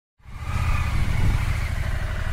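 Motorcycle engine idling close by, a steady low rumble that comes in suddenly a moment after the start.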